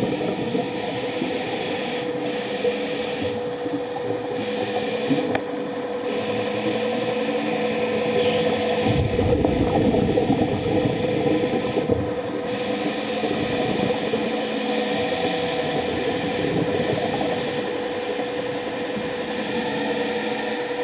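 Electric thrusters of an underwater ROV running, heard through the water as a steady whir with a constant hum, rising and falling a little in loudness as the vehicle manoeuvres.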